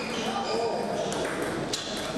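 Table tennis rally: the ball clicking off the bats and the table, a few sharp ticks about a second apart, echoing in a large hall.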